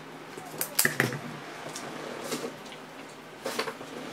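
Sharp clicks and light taps of small objects handled and set down on a tabletop, a black marker pen among them. The loudest clicks come about a second in, with a fainter one later and a short clatter near the end.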